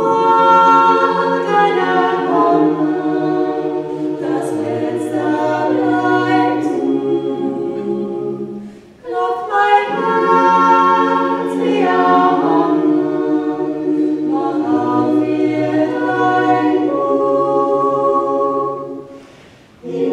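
Choir singing a cappella in two phrases, with a pause for breath about nine seconds in and another short break just before the end.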